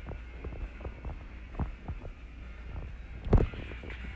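Steady low hum with scattered soft knocks and one loud thump a little over three seconds in.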